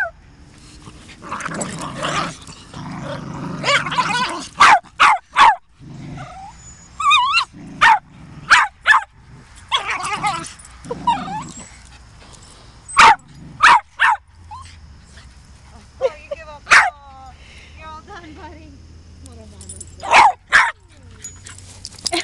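Small dogs playing tug-of-war over a rope toy: play growling near the start and again about ten seconds in, with many short, sharp barks and yips between.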